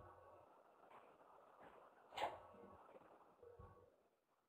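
Near silence: faint room tone through the microphone, with one short sharp click about halfway through and a softer low knock near the end.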